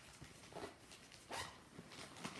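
Faint rustling of a fabric pouch being handled and turned in the hands, with two brief, slightly louder rustles about half a second and a second and a half in.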